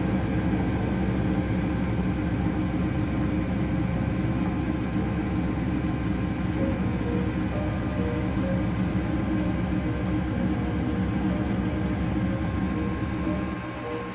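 A 1980 Philco W35A front-loading washing machine running with water and laundry in the drum: a steady motor hum and rumble as the drum turns. The sound drops away slightly near the end.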